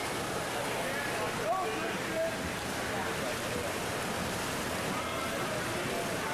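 Steady wash of splashing from swimmers racing freestyle in an indoor pool, with faint voices from the crowd underneath.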